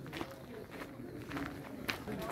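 Faint footsteps on gravel, a few irregular steps, with one sharper click near the end.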